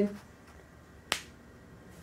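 A single short, sharp click a little over a second in, against a quiet room.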